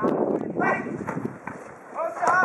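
Futsal players calling out during play, over quick running footsteps and sharp ball touches on artificial turf.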